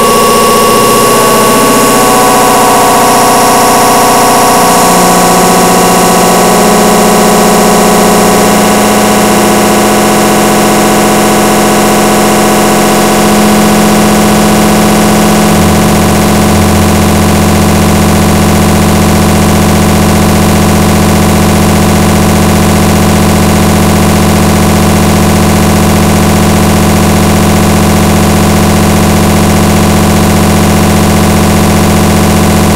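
Electronic music of sustained synthesizer tones: held notes shift in steps over the first half, then a low chord holds steady from about halfway.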